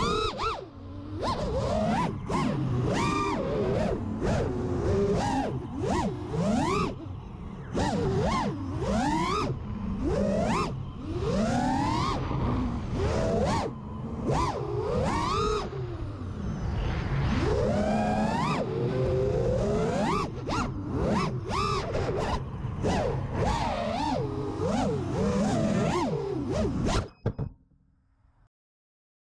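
FPV racing quadcopter's brushless motors (Amax 2306 2500kv) spinning HQprop 5-inch tri-blade props. The whine constantly climbs and falls in pitch as the throttle is punched and chopped, with wind rushing over the onboard camera. The sound cuts off abruptly near the end.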